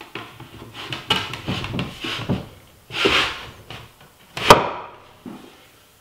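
Solid walnut and zebrawood chair parts being handled and fitted together by hand: wood sliding and rubbing against wood, with several light knocks and one sharp wooden knock about four and a half seconds in.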